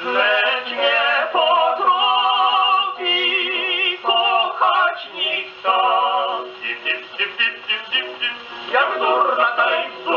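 A 1930 78 rpm shellac dance record played on a portable wind-up gramophone, thin and without bass. Held notes with vibrato give way, a little after the middle, to a run of short, clipped notes before the full sound returns near the end.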